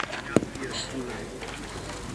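A single sharp knock about a third of a second in: a thrown steel petanque boule landing on the gravel court. Faint voices follow.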